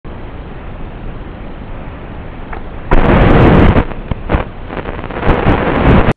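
FPV racing quadcopter crashing: steady noise, then about three seconds in a sudden loud crash lasting about a second, followed by several sharp knocks.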